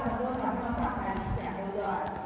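Many children's voices chattering at once, a steady overlapping babble with no single voice standing out, with a few faint scattered knocks.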